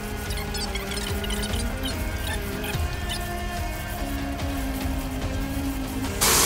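Background music with held notes, laid in place of the running tap sound.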